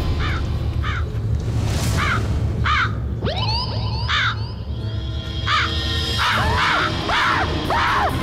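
A crow cawing in short, harsh calls, about one every half second to second, with more caws crowding in and overlapping in the last few seconds. A low, steady music drone runs underneath.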